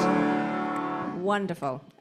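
The worship band's final chord, with guitar, ringing out and fading away. About a second in, a woman starts speaking.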